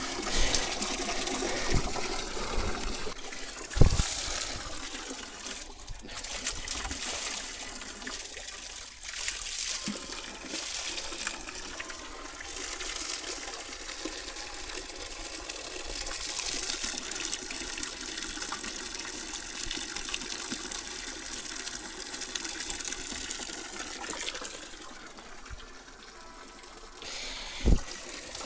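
Water running from a fountain spout and splashing steadily into a stone basin. A sharp knock comes about four seconds in and another near the end.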